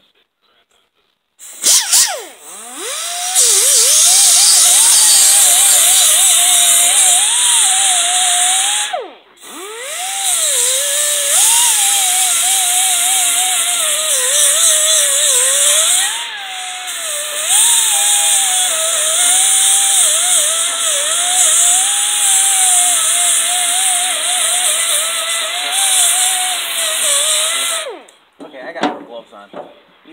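Pneumatic die grinder grinding heavy rust off the steel deck of a rotary brush hog: a high whine that dips and wavers in pitch as the bit bites into the metal, over a steady high hiss. It starts about a second and a half in, breaks off briefly twice, and stops shortly before the end.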